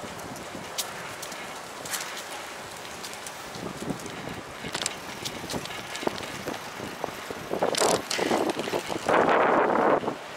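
Bicycle rolling over paved sidewalk, heard from a bike-mounted action camera: a steady rush of tyre and road noise with scattered light clicks and rattles from bumps. Near the end two louder rushes of noise come through, the second lasting about a second.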